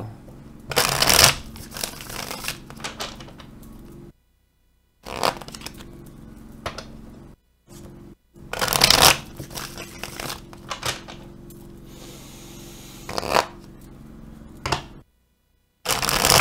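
A tarot deck being shuffled by hand in several short bursts. The loudest come about a second in and about nine seconds in, with dead-silent gaps between some of them.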